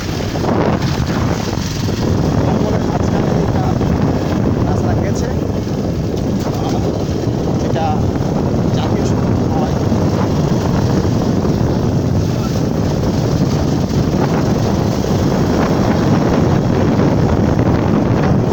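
Wind rushing over the phone's microphone on a moving motorcycle, with the motorcycle's engine running underneath as it rides along a rough road.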